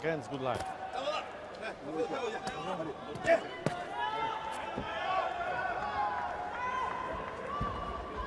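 Indistinct voices echoing in a large indoor boxing arena, with a few sharp thumps in the middle and near the end.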